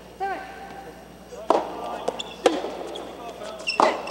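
Soft tennis rally: three sharp pops of the soft rubber ball being struck by rackets, about a second apart, after a short shout near the start.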